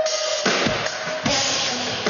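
Live pop-rock band playing an instrumental passage led by the drum kit: bass drum strokes and two crash-cymbal hits, the first right at the start and the second just over a second in, over a held note from the band.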